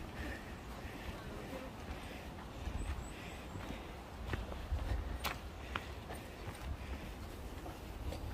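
Footsteps on a mountain trail, low uneven thuds with a few sharp clicks past the middle, over faint voices.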